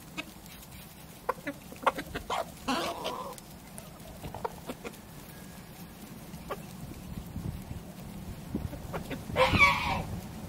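A flock of Transylvanian naked neck chickens clucking as they forage, with one louder, brief call just before the end.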